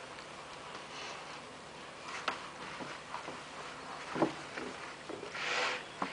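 Soft handling noises at a whiteboard as the written board is cleared: a few light knocks, the loudest about four seconds in, then a short rubbing swish near the end.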